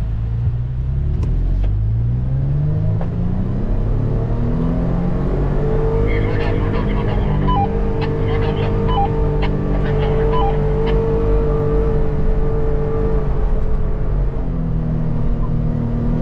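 Toyota FJ Cruiser's 4.0-litre V6, heard from inside the cabin while it drives over sand dunes: the engine note climbs over the first few seconds under acceleration, holds steady, and drops back near the end.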